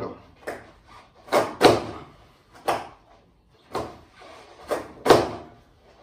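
A person repeatedly jumping on a stationary skateboard and landing back on it on a wooden floor, the deck and wheels knocking down on the boards with each landing. There are about six or seven sharp knocks, roughly one a second, some coming as a quick double knock.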